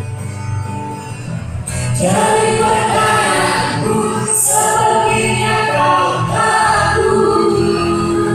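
A small mixed vocal group singing in harmony to acoustic guitar accompaniment; the voices come in together about two seconds in, after a quieter passage of low notes, and then hold long notes.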